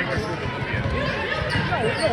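A basketball being dribbled on a hardwood gym floor, heard under nearby voices chatting in a large gym.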